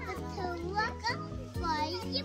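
Young children's high-pitched voices in several short bursts, over background music with steady held notes.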